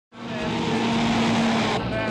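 A truck engine running, cutting in abruptly out of silence and holding steady.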